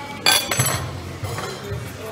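Cutlery clinking sharply against a plate or glass about a quarter second in, with a short ring, over steady background music.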